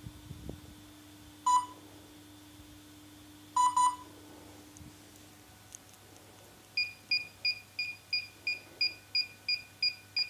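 Electronic beeps from a DJI Mavic Air drone and its remote controller being linked. There is a single beep about one and a half seconds in and a quick double beep near four seconds. From near seven seconds a steady run of higher beeps, about three a second, signals that linking is in progress.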